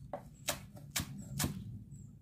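Chef's knife finely slicing chives on a wooden cutting board: a series of crisp knocks of the blade on the board, about two a second.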